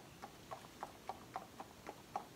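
Faint clip-clop of a horse's hooves, a steady series of hoof strikes about four a second.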